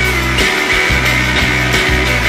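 Rock band playing an instrumental passage: electric guitar over a stepping bass line and drums, steady and loud, with no singing.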